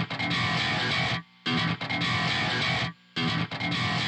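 Distorted electric guitar parts playing back from a multitrack mixing session, a busy thumb-technique passage that drops out twice, briefly, to near silence.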